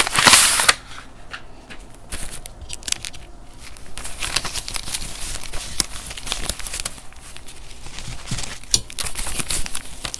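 US paper banknotes handled close to the microphone: crisp rustling and flicking as a thick stack of bills is fanned and riffled. A louder paper rustle comes in the first second, as the envelope holding the cash is handled.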